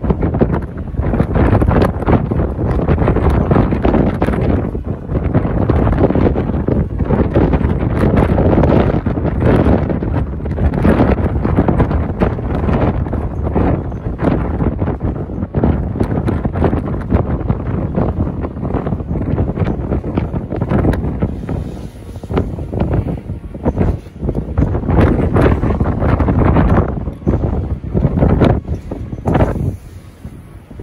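Gale-force storm wind buffeting the camera microphone in loud gusts, with a few brief lulls.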